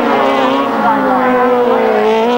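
Several 1000cc grasstrack sidecar outfits racing, their engines running hard, with the nearest one passing close and its note falling slowly and steadily.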